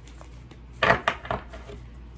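A deck of tarot cards being gathered and knocked against a wooden tabletop: a short run of clacks and rustles about a second in.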